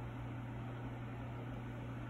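A steady low hum over a faint, even hiss: constant background machine or fan noise.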